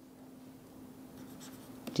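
Stylus nib scratching faintly on a pen tablet in short handwriting strokes, over a faint steady hum.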